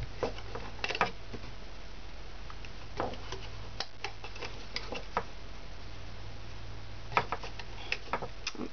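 Small irregular clicks and taps of rubber loom bands being stretched and snapped onto the plastic pegs of a Rainbow Loom, over a steady low hum.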